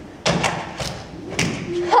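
Several thumps and knocks on a stage floor as two actors struggle and thrash on it, the first and loudest a moment after the start.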